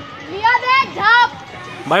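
Young people's voices calling out in a few short shouts, untranscribed, followed near the end by the start of speech.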